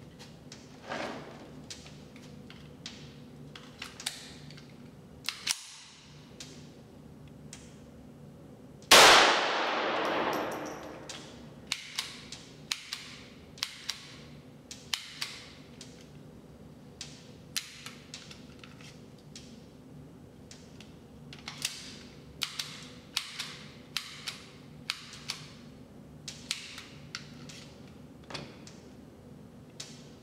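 Pistol firing .22 LR rounds one at a time from an EAA Witness with a .22 conversion kit, with short sharp cracks every half second to a second, ringing in the reverberant indoor range. About nine seconds in there is one much louder gunshot with a long echo. A steady hum runs underneath.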